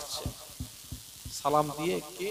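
A man's voice over a close microphone in melodic, chant-like sermon delivery. A pause filled with breath and a few soft low thumps on the mic, then a sung phrase resumes about one and a half seconds in.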